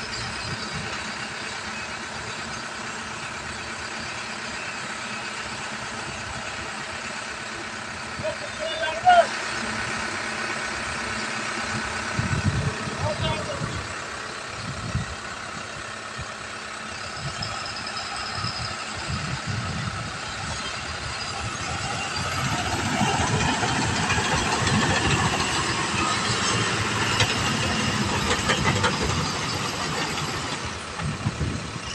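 Heavy diesel engine of a construction vehicle running steadily. It grows louder about two-thirds of the way through, and there is a brief sharp sound about nine seconds in.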